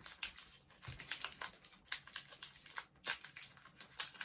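Plastic chocolate-bar wrapper crinkling and crackling as it is handled, an irregular run of sharp little crackles.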